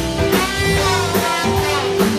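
Live band playing loud music with a steady drum beat: trombone and electric guitar over a drum kit.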